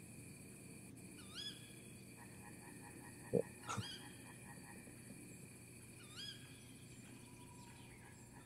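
Wwise forest ambience set to full night, built from forest field recordings. Under a faint steady hiss, a short animal call with a curving pitch repeats about every two and a half seconds. A brief low sound a little past the middle is the loudest moment.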